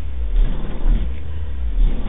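Very deep bass from a horror-film soundtrack played loud through a tapped-horn subwoofer with a 12-inch Dayton dual-voice-coil driver. The low rumbling tone swells and fades several times.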